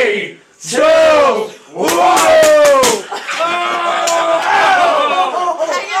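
A group of people shouting a countdown in unison, with several sharp pops of a paintball gun firing in quick succession about two seconds in, followed by continuous excited shouting and yelling.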